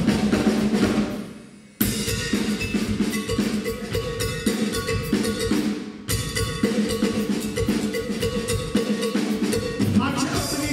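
Live Louisiana blues band playing, with the drum kit to the fore over electric guitars. About a second in the music fades down and then cuts back in sharply; there is a brief dip again about six seconds in.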